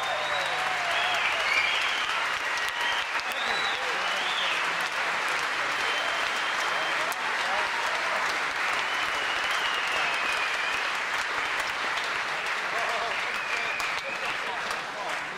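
Concert audience applauding and cheering as a song ends, a steady wash of clapping with many high whistles rising and falling over it.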